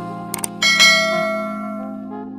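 A subscribe-button sound effect: two quick mouse clicks, then a bright bell ding that rings out and fades, over soft background music.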